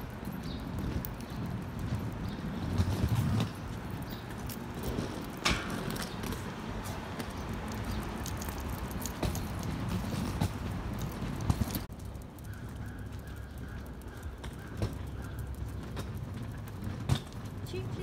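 Footsteps and scattered clicks on a pavement sidewalk over a steady low rumble of street noise.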